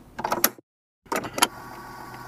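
A few short clicks and rustles, then a moment of dead silence, then the steady hiss and faint hum of an archival interview recording's background noise.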